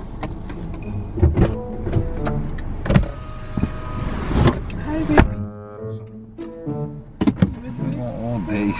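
A car door opening and a person climbing into the driver's seat, with knocks and rustling of clothes against the seat. The door shuts with a thud about five seconds in, cutting off the outside noise.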